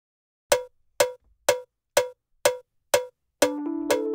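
Six sharp, evenly spaced cowbell-like percussion hits, about two a second, counting in the song. Then the music comes in with sustained chords and a low bass line near the end.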